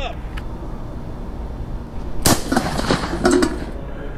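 A single 12-gauge shotgun shot about two seconds in, a sharp crack that dies away quickly.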